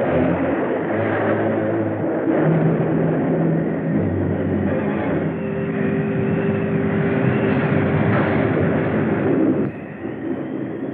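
Old film soundtrack: a continuous rumbling roar with a few low droning tones held under it. It drops away abruptly near the end.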